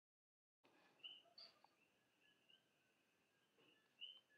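Near silence: faint room tone, with a few brief, faint high chirps.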